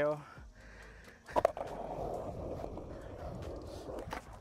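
A sharp clack about a second and a half in, then skateboard wheels rolling steadily over concrete.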